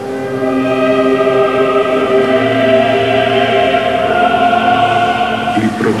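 Choral background music: voices holding long, steady notes. A man's narration starts again right at the end.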